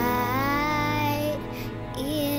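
A young girl singing a slow hymn over a soft instrumental backing, holding one long note that glides up at its start.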